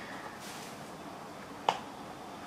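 Quiet room tone broken by a single sharp click near the end.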